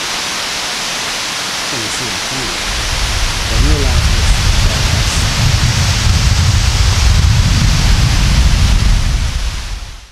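Mosquito Falls running with a steady, rushing roar. From about three seconds in, a heavy, uneven low rumble joins it and makes it louder.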